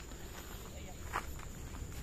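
Footsteps through grass and undergrowth, soft and irregular, over a thin steady high-pitched tone.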